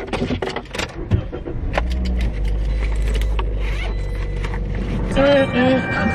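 Keys jangling, then a car engine starting and running with a low, steady rumble. A voice or music comes in near the end.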